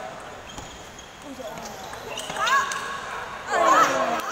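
Table tennis ball clicking off paddles and table in a doubles rally. It is followed by loud shouts from the players about two seconds in and again near the end, as the point is won.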